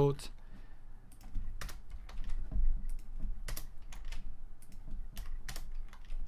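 Typing on a computer keyboard while tidying code: irregular, scattered keystrokes with short gaps between them.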